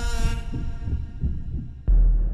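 Trailer sound design: a sustained ringing chord fades away over repeated low bass pulses, then a sudden deep hit lands near the end.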